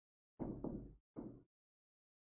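Two brief dull knocks, a little under a second apart, of a pen tip striking a touchscreen board as a word is written on it.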